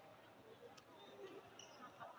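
Quiet background with faint distant voices and a single light click a little under a second in: a table tennis ball bouncing.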